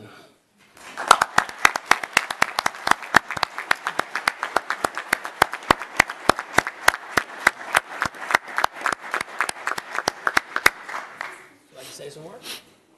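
Applause from a small group of people, distinct hand claps starting about a second in and stopping near the end.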